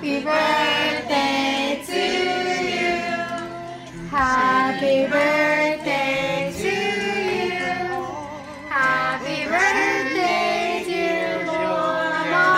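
A group of voices, women and children among them, singing a birthday song together in long drawn-out phrases, with short breaks about four and eight and a half seconds in.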